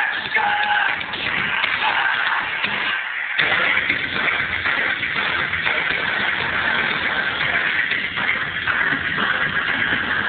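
Music played loudly through a homemade wooden subwoofer box (caisson de basse) fitted with car audio speakers and driven by a car amplifier, with the low end briefly dropping out about three seconds in.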